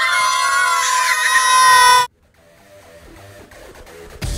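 Children shouting one long, high, held 'aaah' of celebration, which cuts off suddenly about two seconds in, leaving only a faint sound after it.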